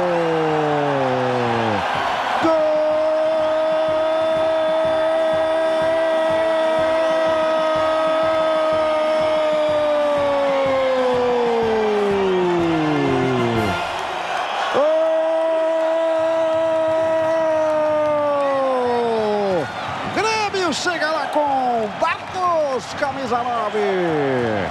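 Brazilian TV football commentator's drawn-out goal cry in Portuguese, a single shout held for about eleven seconds that falls in pitch as it ends, then a second held cry of about five seconds, then rapid excited shouting, all over stadium crowd noise.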